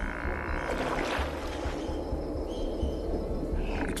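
Frogs croaking in a dense, steady chorus, over low background music.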